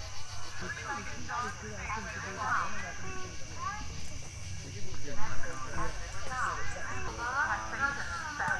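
Several people's voices talking at once, overlapping and indistinct, over a steady high-pitched drone.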